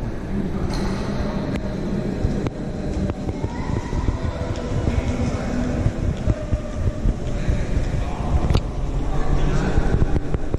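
Indistinct chatter of a crowd of visitors in a large marble hall, over a steady low rumble, with a few sharp clicks.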